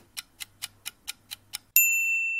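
Countdown timer sound effect: quiet, quick clock ticks, about four or five a second. Near the end a loud, steady, bright chime rings out as the countdown completes.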